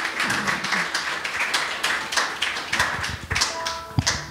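A congregation clapping together, a dense, irregular run of hand claps. A few steady music tones come in near the end.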